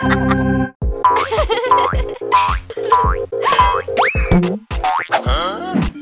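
Bouncy cartoon background music with a steady beat, over a run of springy boing sound effects that glide upward in pitch, several in a row from about a second in.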